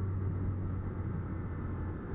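Motorcycle riding along at steady speed: a low engine hum under the rush of wind and road noise on the microphone.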